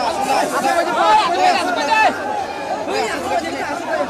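Dense crowd chatter: many voices talking and calling out at once, overlapping steadily throughout.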